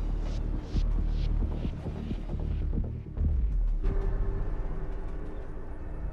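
Film score: a low, throbbing bass drone with a series of airy whooshes in its first half and a held note coming in about four seconds in.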